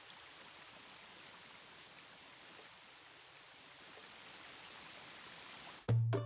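Shower running, water spraying down in a steady hiss. It cuts off suddenly near the end.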